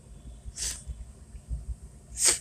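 Low, uneven rumble of a car driving, with a short sniff close to the microphone about half a second in.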